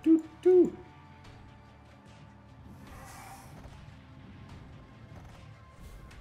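Online slot-machine game audio: three short hooting tones in the first half-second, then quiet background game music with a brief hiss about three seconds in.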